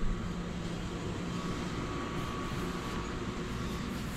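Steady background hum and hiss of a shop interior, even throughout, with a low drone and a faint thin tone and no distinct events.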